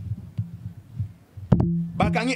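A man's low, closed-mouth murmur and a held 'mmm' hum between phrases, pulsing at first. A sharp click comes about one and a half seconds in, and the hum runs straight on into speech.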